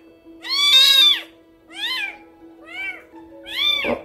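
A very young kitten mewing four times in high calls that rise and fall in pitch, the first the loudest and longest. The mews are its protest while being stimulated by hand to toilet.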